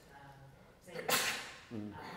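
A short, loud breathy burst from a man's voice about a second in, followed near the end by a brief voiced sound that falls in pitch.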